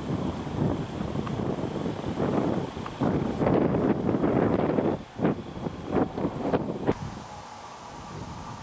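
Wind buffeting the camera microphone in gusts, loudest around the middle and easing off near the end, with a few short knocks in the latter half.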